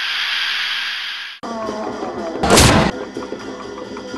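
An edited-in sound effect for a sponsor-logo animation: a steady hissing whoosh that cuts off about a second and a half in. Drum-led music then returns, and a loud boom-like crash lasting about half a second hits about two and a half seconds in.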